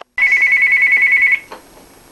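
Phone ringing: a loud, high electronic trill warbling rapidly for just over a second, then cutting off suddenly.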